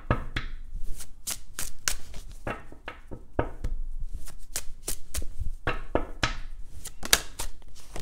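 A deck of oracle cards being shuffled by hand over a cloth-covered table: a quick, irregular run of card snaps and slaps, several a second.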